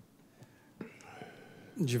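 Quiet room tone in a small press room, with a faint tick and a soft murmur, then a man's voice starts speaking just before the end.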